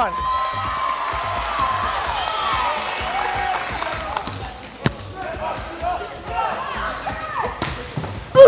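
A group of kids cheering and shouting together. About five seconds in comes one sharp smack of a hand spiking a volleyball, followed by scattered voices.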